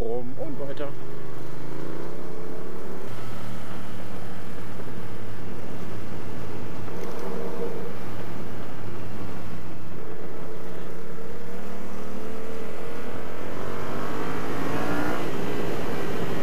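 Yamaha MT-07's 689 cc parallel-twin engine running on the road over a steady rush of wind. Its pitch dips and rises near the start, holds fairly steady through the middle, then climbs steadily near the end as the bike accelerates.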